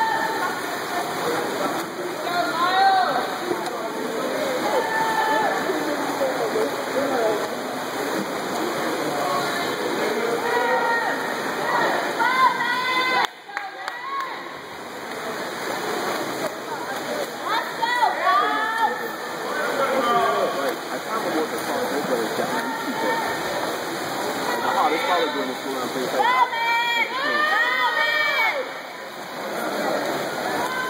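Splashing water from freestyle swimmers, heard as a steady wash, with spectators' voices shouting and calling out over it in short bursts. There is a brief break about 13 seconds in.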